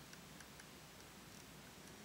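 Near silence: faint room hiss with a few faint, irregular ticks.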